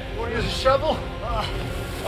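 Short, repeated male shouts of "Ah!", several a second, over steady background music.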